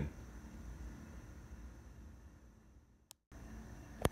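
Faint room tone with a steady low hiss and hum. About three seconds in it drops to dead silence for a moment with a click, an edit cut, and another short click comes at the very end.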